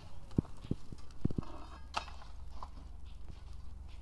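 Iron crowbars knocking and prying against a large fire-cracked boulder: a few irregular, sharp knocks of metal on stone. Heating with a fire has made the stone crack, so it breaks apart easily under the bars.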